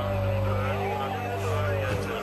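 Film soundtrack of a police siren wailing, sliding slowly down, up and down again in pitch, over sustained low music chords, with voices faint in the background.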